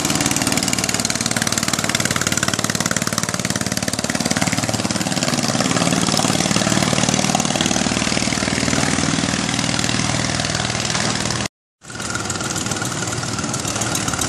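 Long-tail boat engine running at speed as the boat passes close by, its pitch dipping and coming back up about halfway through. The sound cuts out for a moment near the end, then engine noise carries on.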